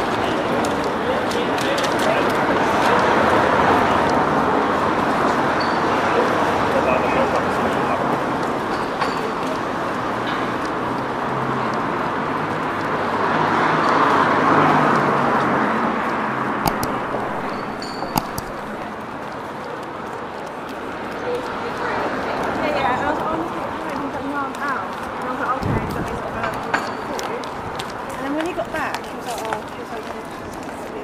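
Indistinct chatter of many voices, a crowd babble with no words standing out, swelling in loudness about halfway through. A few sharp clicks come soon after the swell, and a low thump comes near the end.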